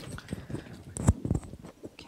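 Microphone handling noise as a mic is passed between speakers: a series of irregular knocks and rubs, the loudest about a second in.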